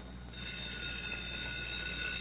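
Telephone bell ringing: one long, steady, high ring that starts about a third of a second in.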